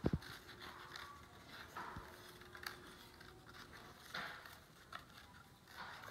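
Scissors cutting around a paper plate, faint snips and scraping as the plate is turned, with a soft thump at the very start.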